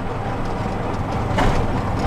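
Tuk-tuk's small engine running with road noise, heard from inside the open cabin while driving: a steady low hum under a rushing noise, briefly louder about one and a half seconds in.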